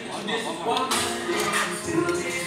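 Hip-hop music with rapped vocals.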